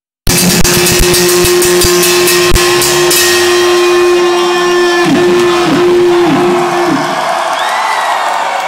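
Live heavy metal band playing loud, the sound cutting in suddenly a moment in: drum hits under distorted electric guitar for the first few seconds, then one long held guitar note that dips in pitch several times near the end as the song closes.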